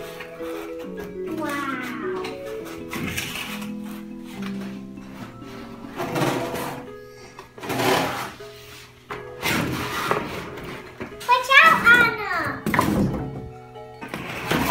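Background music with a steady melody, over which a child's voice rises briefly near the start and again near the end. In between come the scraping and rustling of a cardboard toy box being handled and pulled open.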